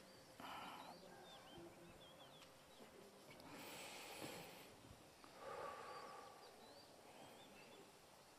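Near silence with three faint, slow breaths, a person breathing quietly while holding a twisting stretch.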